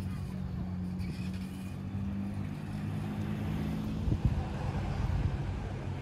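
A motor vehicle's engine humming steadily, over a low rumble, with a few knocks about four seconds in.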